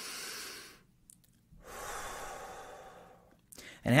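Two slow, deep breaths by a man demonstrating breath meditation: a shorter one in the first second, then a longer, drawn-out one about a second and a half in.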